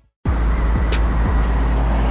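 Road traffic noise with a deep steady rumble, starting after a brief silence at the very start.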